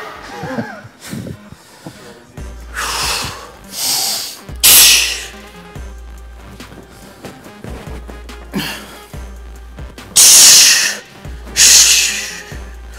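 A heavyweight powerlifter's forceful breaths, hard sharp exhales as he psyches up for a heavy bench press set. There are about five, three close together a few seconds in and two more near the end, the ones at about five seconds and ten seconds loudest.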